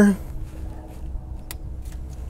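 Two light clicks from an engine sensor's plastic electrical connector being worked loose by hand, over a steady low rumble.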